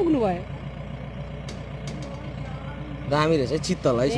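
Safari jeep's engine idling, a steady low hum, with people talking over it at the start and again from about three seconds in.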